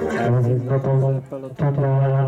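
Background music cuts off just after the start, then a man's voice calls out in long, drawn-out tones over a PA loudspeaker, with a brief break in the middle: the race announcer getting excited as the riders come in to sprint for the line.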